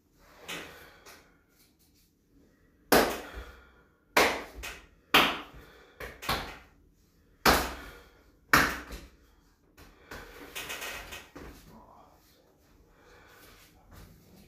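A rapid series of sharp knocks and thuds, about eight in six seconds, as a bonesetter manipulates a patient's leg on a treatment couch, followed by a longer rustle of clothing and bedding.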